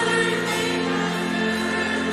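Live contemporary Christian worship music: a band playing while singers hold long sung notes.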